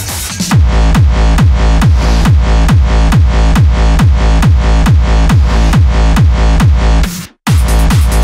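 Trance track in a DJ mix: a four-on-the-floor kick drum hits on every beat, a little over two a second, over a driving bass line. Near the end the music cuts out for a split second, then the beat comes straight back in.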